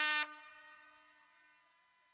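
The last short note of a trumpet call, a repeated note on one pitch, ending about a quarter second in and ringing away within about a second; then near silence.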